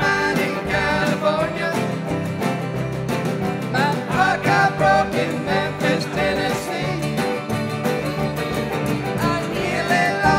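A live band playing an upbeat country-bluegrass song, with electric bass and drums keeping a steady beat under a wavering lead melody.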